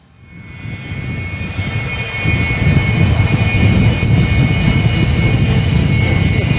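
Jet engines of a twin-engine Sukhoi fighter rolling along a runway: the noise fades in over the first two seconds, then holds loud and steady with a high whine on top.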